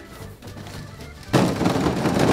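Many plastic wiffle balls poured from a bucket, clattering into a plastic kiddie pool full of more balls. The clatter starts suddenly near the end and keeps on.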